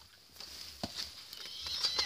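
Faint handling noise from a handheld camera moved over an open book: soft rustle with a few light clicks, the clearest about a second in.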